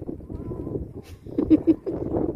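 A horse cantering on a sand arena: hoofbeats in the sand and its breathing in time with the stride. The loudest is a pair of strong low breaths about a second and a half in.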